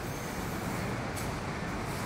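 Steady factory-hall background noise: an even mechanical rumble and hiss with no distinct knocks or other events.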